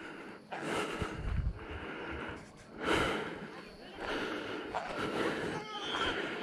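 A man breathing heavily close to the microphone while walking, a few loud breaths in and out.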